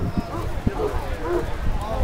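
Indistinct chatter of a crowd of people, no single clear voice, over a steady low rumble.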